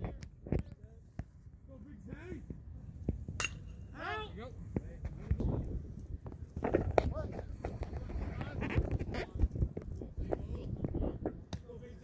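Indistinct voices calling and chattering at a baseball field, over a steady outdoor hum. One sharp crack comes about three and a half seconds in.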